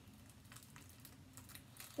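Faint handling noise of a small plastic toy figure turned over in the hands: a few light clicks and rustles over quiet room tone.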